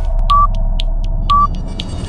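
Countdown timer sound effect: a short beep once a second, twice here, with quick ticks about four times a second between the beeps, over a steady low hum.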